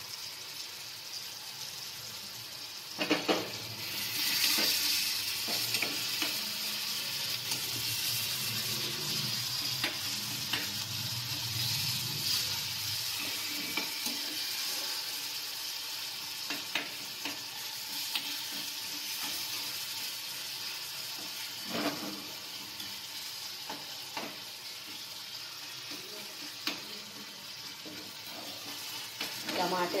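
Chopped tomatoes and masala sizzling in oil in a metal kadhai, stirred with a metal spoon that scrapes and knocks against the pan now and then. The sizzle gets louder about three seconds in.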